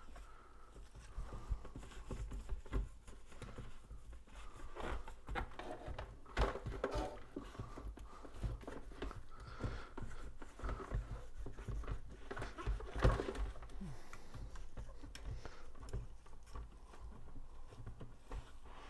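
Paper towel wiping the inside of a hot-air popcorn popper: irregular rubbing and scuffing with occasional light knocks from handling the machine.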